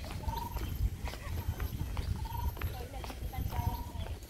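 A bird repeating a short wavering call three times, over a low wind rumble and the irregular knocks of footsteps.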